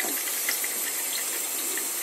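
Kitchen tap running in a steady stream into a stainless steel sink, with small splashes.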